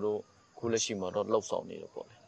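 Speech: a man talking, with a brief pause just after the start.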